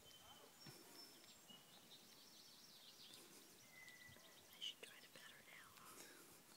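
Near silence with faint birdsong: a few short whistled notes and chirps from birds, one slightly louder chirp a little past the middle.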